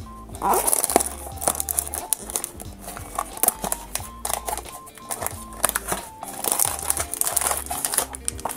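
Cardboard blind box being torn open and its silver foil inner bag pulled out, crinkling and crackling, over background music.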